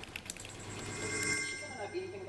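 Dead air on a failing telephone link: a steady low hum with faint, steady high electronic tones, and no reply coming through.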